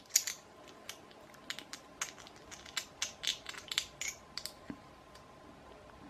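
Two small 3D-printed plastic parts being handled and test-fitted together: a run of light, irregular clicks and scrapes of plastic on plastic for about five seconds, then quiet handling.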